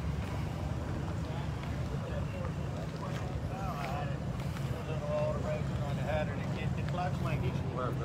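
Outdoor car-meet ambience: a steady low rumble, like an engine idling somewhere in the lot, under voices chattering in the distance, which grow more noticeable about halfway through.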